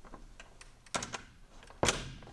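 A few sharp clicks and knocks from a hotel room door's handle and latch, a cluster about a second in and the loudest knock near the end as the door shuts.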